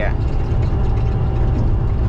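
Semi-truck cab at highway cruising speed: a steady low engine drone with road noise, heard from inside the cab, with a faint steady whine.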